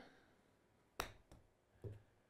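A golf club striking a golf ball off a hitting mat on a chip shot: one sharp click about a second in, then a fainter tick a moment later. The ball comes off the centre of the clubface, a clean strike rather than a shank off the hosel.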